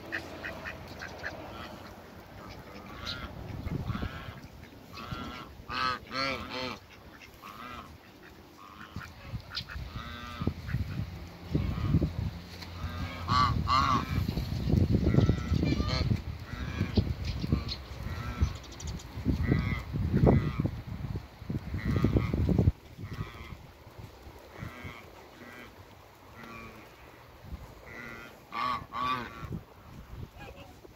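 Farmyard ducks and other waterfowl calling: short honking quacks in scattered clusters, with a low rumble through the middle stretch.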